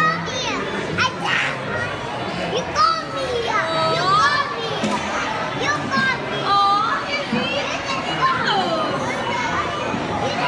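Small children's high, excited voices, with short squeals and babbling, over the busy chatter of a crowded dining room.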